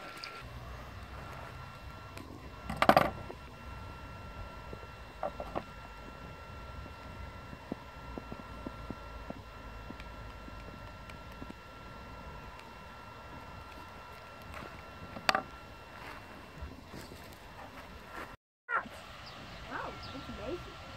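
Low, steady background with a faint high whine, broken by two brief louder knocks, about 3 and 15 seconds in, and a scattering of small clicks. The sound drops out completely for a moment near the end.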